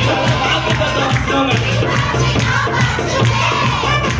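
Live amplified worship music: a man singing into a microphone over backing music with a steady beat and pulsing bass, with congregation voices joining in.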